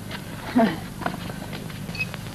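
Worn old film soundtrack with steady hiss and low hum. About half a second in a man makes a short falling vocal sound, and a few faint light knocks follow.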